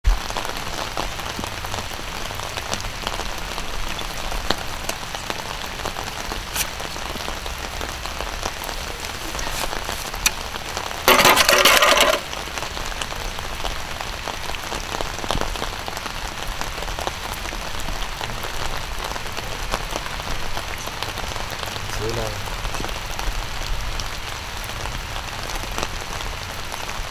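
Steady light rain with many scattered drop ticks. About eleven seconds in, a loud burst of rustling noise lasts about a second.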